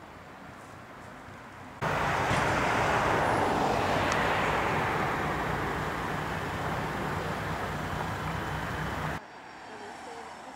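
Loud, steady rushing engine noise with a low hum underneath, cutting in abruptly about two seconds in and stopping just as suddenly about a second before the end, fading slightly as it runs.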